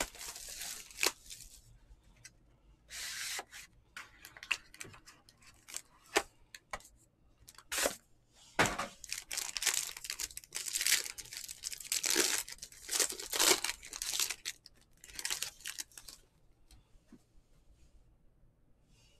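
Foil wrappers of Panini Origins football card packs being torn open and crinkled by hand: a long run of short, sharp crackling rips that stops about a second and a half before the end.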